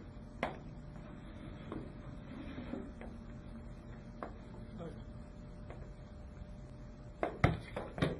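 Wooden rocker board rocking and knocking against the floor as it is pushed under a person's feet: scattered light taps and knocks, with a louder cluster of thuds near the end.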